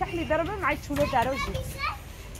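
A young child talking in a high-pitched voice, with no other sound standing out.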